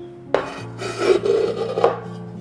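A rough rubbing noise lasting about a second and a half, starting a moment in, over background music with steady held notes.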